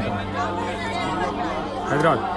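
Indistinct chatter of several people talking.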